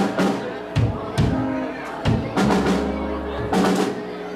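Live band playing: drum kit strikes at uneven intervals over held, sustained chords from a button accordion.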